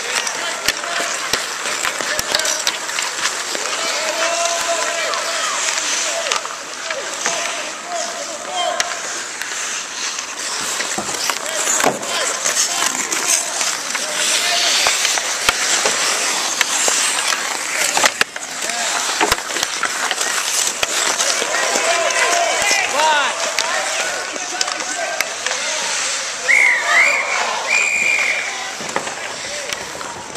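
Ice hockey skates scraping and carving on rink ice, with sticks and puck clacking throughout and a sharp clack about two-thirds of the way through. Players and onlookers call and shout over it.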